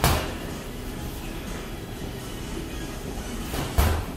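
Gloved punches landing on a hanging Everlast heavy bag: one heavy thud right at the start, then two quick thuds near the end, the second the loudest, over a steady background hum.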